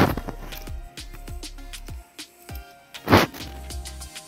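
Background music with a steady beat, and two louder clatters of a steel plate knocking against a steel bowl as grated cucumber is tipped in: one at the start and one about three seconds in.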